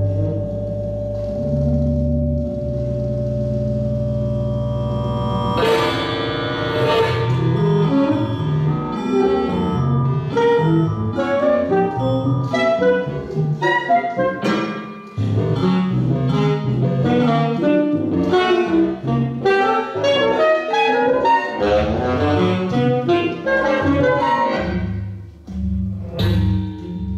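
Tenor saxophone processed through live electronics: a low sustained drone that steps in pitch for the first six seconds or so, then a dense, fast flurry of short overlapping notes.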